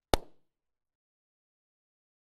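A bubble-gum bubble bursting with a single sharp pop just after the start.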